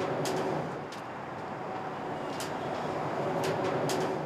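Bridge inspection device running steadily as its platform is lowered beneath the bridge deck: a continuous mechanical rumble with a faint hum and a few light clicks.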